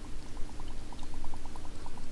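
Air bubbling out of the drilled holes in a hollow 3D-printed PLA castle piece held under water, as water floods its inner cavities: a quick, irregular run of small bubble pops, several a second.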